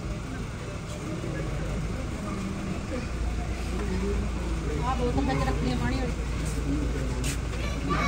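Several people talking quietly at once, voices overlapping, with a steady low rumble underneath that grows stronger about three seconds in.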